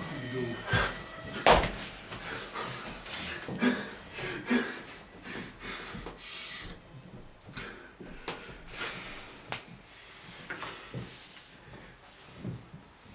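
Scattered sharp clicks and knocks at a poker table, loudest about one and a half seconds in and again near nine and a half seconds, with low murmured voices between them.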